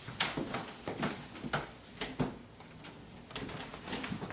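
A run of light, irregular knocks and clicks, about eight to ten over four seconds, like objects being handled and set down.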